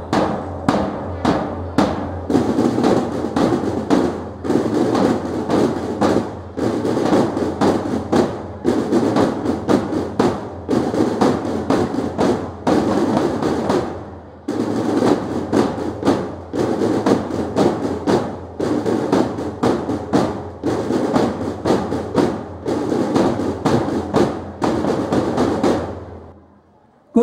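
A small school drum team playing snare drums in a fast rolling marching beat. There is a brief pause about halfway through before the drumming resumes.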